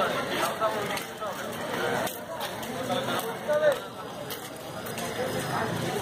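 Indistinct voices of people talking in the background, with no other clear sound standing out.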